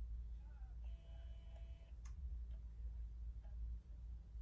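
Canon PowerShot G7X Mark II compact camera being operated in the hand: a faint steady whir for about a second, then a single sharp click, with a few lighter ticks.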